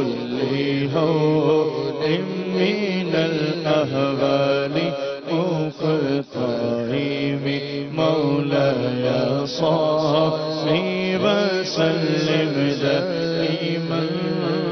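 A man chanting an Islamic devotional recitation (naat) into a microphone, his voice drawn out in long, gliding, ornamented notes.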